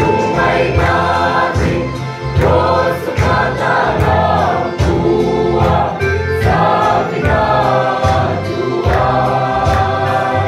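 Mixed choir of women and men singing a gospel hymn in Mizo, many voices together, moving from note to note without a break.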